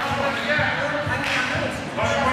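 Several voices of players and spectators talking and calling over one another, echoing in a gymnasium.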